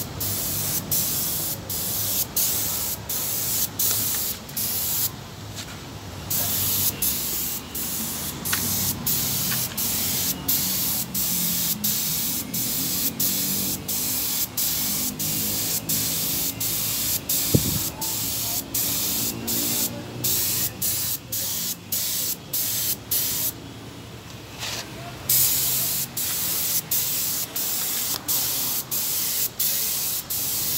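Gravity-feed paint spray gun hissing with compressed air as paint is sprayed onto a car bumper. The hiss is broken by short gaps about twice a second as the trigger is let off between passes, with two longer pauses, and a single sharp click partway through.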